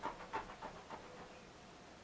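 A person's faint breathing, a few short breaths near the start, then quiet room tone.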